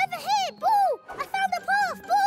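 Cartoon puppy's voiced barks: a quick run of short yips, each rising and then falling in pitch.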